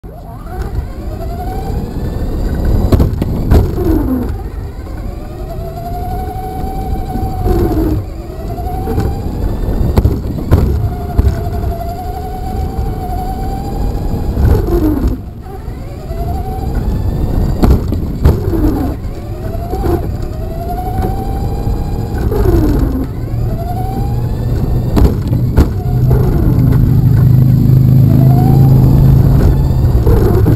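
Electric motor of a Traxxas Slash RC truck whining up and down in pitch again and again as the truck speeds up and slows, over a low rumble of tyres on asphalt, heard from a camera taped to the truck's body. Sharp knocks come now and then, and a louder steady low hum sets in near the end.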